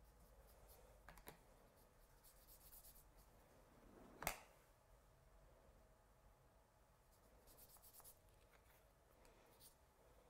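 Near silence: faint scratching of a fine paintbrush stroking across watercolour card, with one sharp tap a little after four seconds.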